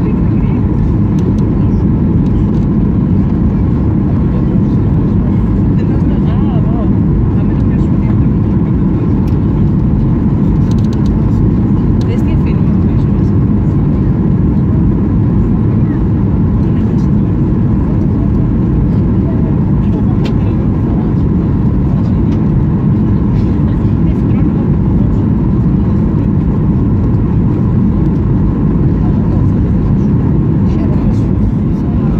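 Cabin noise of a Ryanair Boeing 737 on final approach: a loud, steady low drone of engines and airflow heard from a window seat over the wing.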